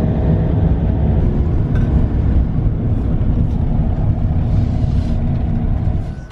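Camper van driving, heard from inside the cab: a steady, loud low rumble of engine and road noise.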